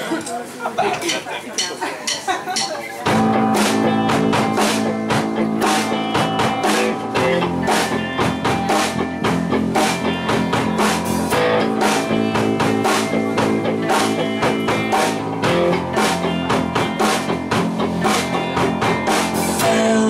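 Live rock band launching into an instrumental intro: after about three seconds of voices, electric guitars, keyboard and a drum kit come in together suddenly and keep up a steady beat.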